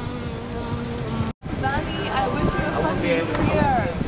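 A busy outdoor background of people talking, with wind rumbling on the microphone. A steady held note sounds for about the first second, and the sound cuts out sharply for a moment at an edit.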